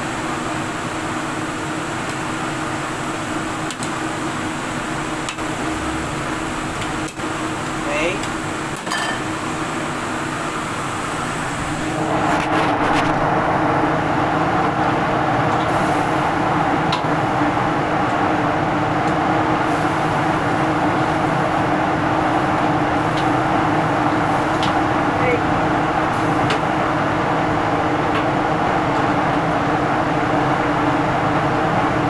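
Steady noise of a kitchen gas wok burner on high flame, with the kitchen's fan-like hum behind it. It gets louder about twelve seconds in, with a few light utensil clicks.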